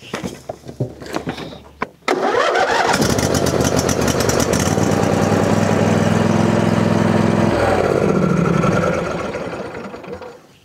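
A Craftsman riding mower's 24 hp two-cylinder 724 cc engine is cranked from a lithium battery through jumper cables. After a few faint clicks, the starter turns it over about two seconds in, and it catches within about a second and runs steadily. Its pitch drops about seven and a half seconds in, and it fades near the end. The crank is not noticeably fast, which the owner suspects is down to the jumper cables not giving a good connection.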